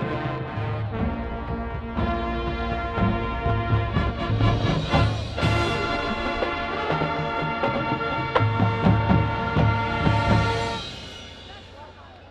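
High school marching band playing: brass chords over drums, stopping about eleven seconds in and dying away.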